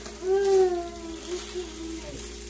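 A young child's drawn-out whining vocal sound, about a second and a half long and falling slightly in pitch, over a steady faint hum.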